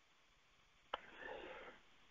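A faint, short mouth click about a second in, followed by a soft in-breath lasting about half a second: the speaker drawing breath between phrases.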